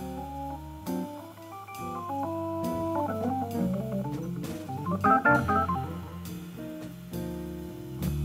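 Hammond organ playing jazz blues, with held chords under a moving melody line and a fast flurry of notes about five seconds in.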